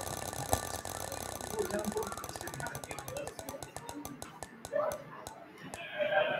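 Ticking of an online spinner wheel's sound effect, rapid at first and slowing steadily as the wheel coasts to a stop, with music playing underneath.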